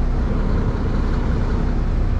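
Semi-truck's diesel engine running steadily at low speed, heard from inside the cab while the tractor-trailer is slowly backed up.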